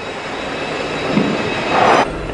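Steady rushing background noise with a few faint steady tones and no speech, swelling slightly near the end.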